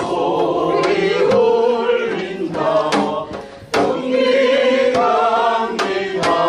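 A singer performing a song with accompaniment, holding long notes whose pitch wavers, with a few sharp percussive hits in the backing.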